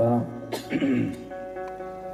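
A man clears his throat once, about half a second in, over background music with a steady held drone.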